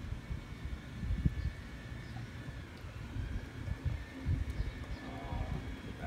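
Ale poured from a glass bottle into a plastic cup, with a low, uneven rumble underneath.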